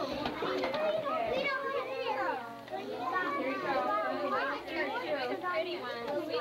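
Many young children talking at once, their high voices overlapping in continuous chatter with no single clear speaker.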